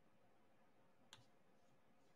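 Near silence broken by a single faint click about a second in: a diamond painting drill pen pressing a resin drill onto the sticky canvas.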